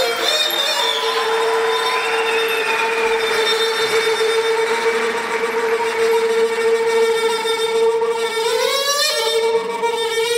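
A traditional Bushehri reed wind instrument holding one long, steady, reedy note, then climbing into a quick run of ornamented notes near the end.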